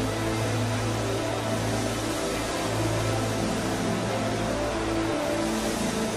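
Sustained keyboard chords with a steady low bass note, held under a congregation praying aloud.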